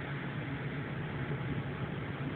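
Steady interior noise of a city bus: a low engine hum under an even rumble and hiss.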